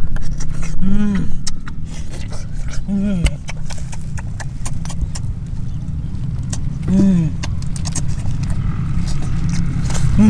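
Close-up eating: crab shell cracking and food being chewed, with many sharp clicks, and three short, pleased hummed "mm"s about one, three and seven seconds in.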